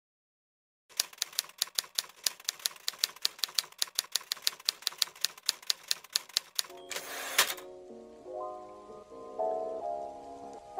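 Typewriter keys clacking at about six strokes a second as a sound effect, starting after about a second of silence and stopping near seven seconds, followed by a short rushing sweep. Soft music with piano-like notes begins just after.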